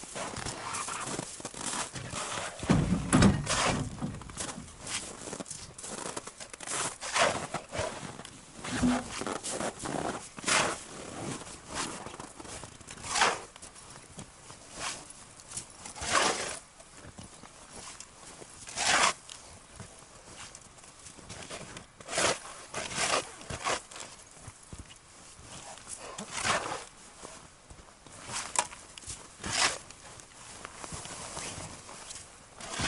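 Metal shovel scooping and scraping snow and ice chips out of a hole in river ice, one crunching stroke every two to three seconds. A heavy thump comes about three seconds in.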